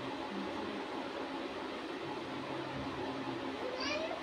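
Steady hiss with a faint constant hum: the room's background tone, with no distinct event.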